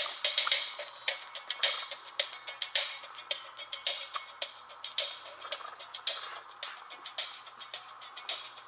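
A 7-inch 45 RPM single playing on an automatic record changer: music with a steady beat about twice a second, sounding thin and trebly with almost no bass.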